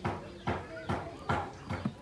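Baby macaque eating fruit with loud, wet smacks of its mouth, a sharp click roughly every 0.4 s.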